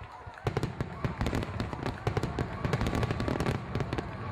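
Fireworks going off: a rapid, dense run of bangs and crackles that starts about half a second in.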